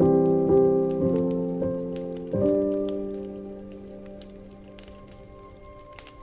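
Slow solo piano music: a chord struck at the start, a few more notes over the next two and a half seconds, then a held chord slowly fading away. A scattering of faint clicks runs underneath.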